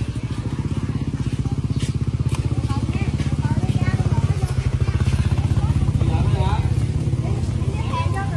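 A motorbike engine running close by with a fast, low putter that swells to its loudest around the middle and eases slightly near the end. People talk over it.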